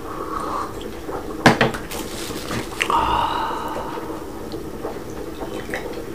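A drinking glass and a porcelain tea set knocking and clinking on a tabletop: a sharp knock about a second and a half in, then more clinks around three seconds. Under them is the steady low rush of a pot of water boiling hard.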